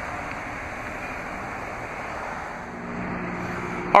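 Steady outdoor background noise, a rushing hiss, with a faint low hum joining near the end.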